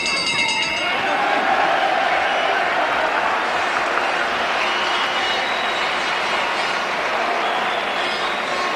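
Boxing ring bell rings once to end the round, fading within about a second, then a crowd applauds with steady, noisy arena applause.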